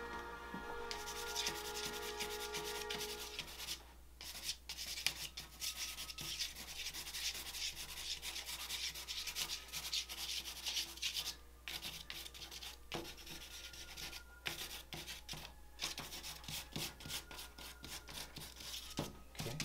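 A charcoal stick scraping across gesso-primed drawing paper in quick, repeated strokes, making a dry, hissy rubbing sound. The sound stops briefly several times between bursts of marks.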